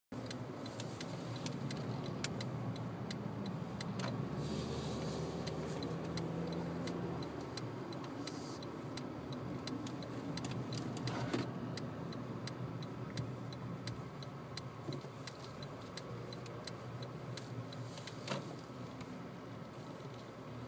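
Car cabin noise while driving: a steady engine and road rumble with frequent light clicks and ticks, getting a little quieter over the last few seconds as the car slows.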